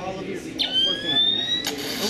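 An electronic tone from the Playmation Avengers repulsor gear: one tone about a second long, rising slightly in pitch and cut off abruptly with a click.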